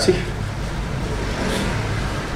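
Steady low background hum and rumble, swelling a little about halfway through.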